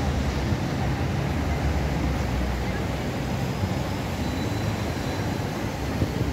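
Steady outdoor city noise: a low rumble of distant traffic mixed with wind buffeting the phone's microphone.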